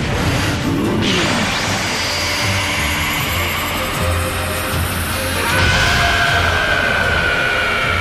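Anime battle music mixed with fight sound effects. There is a crash about a second in, then a high rising whine that builds through the middle, like an energy blast charging.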